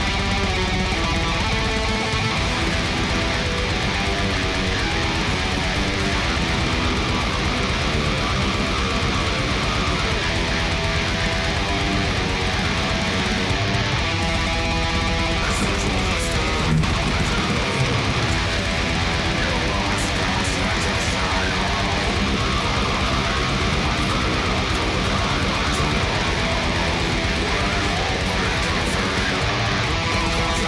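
Heavy metal song with electric guitar riffing, a dense, steady mix that never lets up.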